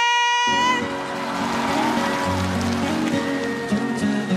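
Instrumental intro of a Taiwanese-language pop ballad starting about half a second in, with sustained chords and a bass line. It cuts in under the end of a long, drawn-out note from the announcer's voice.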